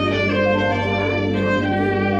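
Violin played live with a bow, a melody of sustained notes over a steady low bass note in the accompaniment.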